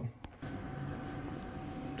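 Steady background hum with a faint constant tone, coming in about half a second in after a brief quiet gap and a single click.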